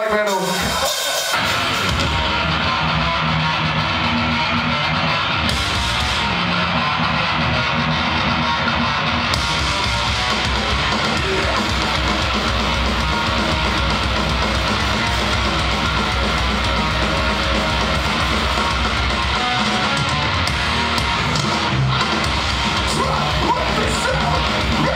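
A thrash metal band playing live, heard from the audience: distorted electric guitars, bass and drum kit. The full band comes in about a second in and keeps up a loud, dense wall of sound.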